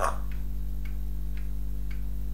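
Faint, regular ticking, about two ticks a second, over a steady low electrical hum.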